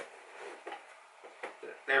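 Faint clicks and creaks from a gaming chair's backrest and frame as it is pushed back to recline, a few soft knocks in the second half.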